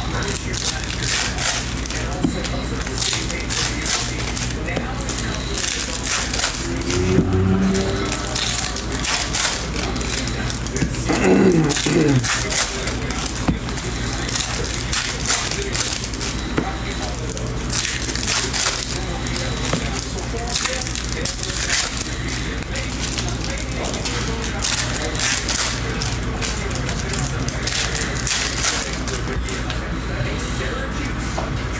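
Foil trading-card pack wrappers crinkling and tearing as packs are opened and the cards handled: a dense crackle over a low steady hum. A brief pitched sound comes about seven seconds in, and a falling tone around eleven seconds in.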